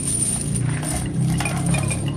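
Steel chains hanging homemade concrete weight plates off a bench-press bar, clinking a few separate times as the weights are lifted and steadied.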